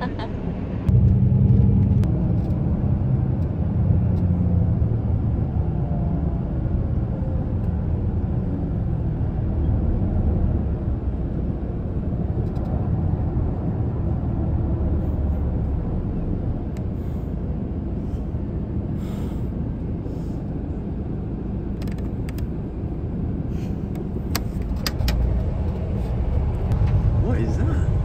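Steady low rumble of a coach's engine and road noise heard from inside the passenger cabin, with a few light clicks in the second half.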